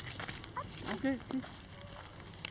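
Footsteps on gravel, many small scattered crunches, with a short spoken "okay" and brief voice sounds near the middle.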